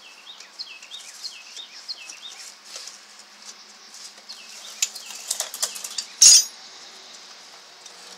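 Electronic parking brake motor being fitted by hand onto a rear brake caliper: scattered small clicks, then a sharp clack about six seconds in as the motor seats. A bird chirps over and over in the first few seconds.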